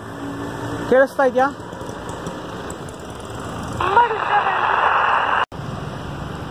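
A received transmission comes through the Baofeng 888S walkie-talkie's speaker about four seconds in as a burst of hissing static with a voice in it. It cuts off abruptly about a second and a half later when the sender stops transmitting. The static comes from the weak link at 1.5 km range.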